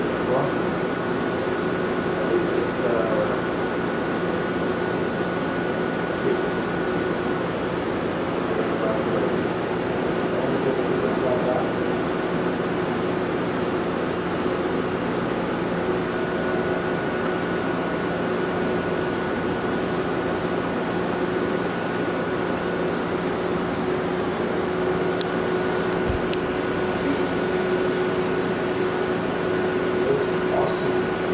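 Steady hum and rushing noise from the LASIK laser suite's equipment, with a faint constant high whine running throughout.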